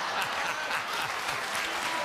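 Studio audience applauding, a dense, even patter of many hands clapping.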